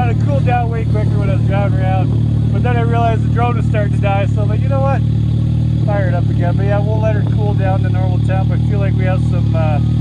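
Can-Am Maverick X3 side-by-side idling with a steady low hum, with people talking over it.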